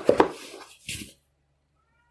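A cardboard record box set being set down on a cloth-covered table: a few light taps, then a short brushing noise about a second in.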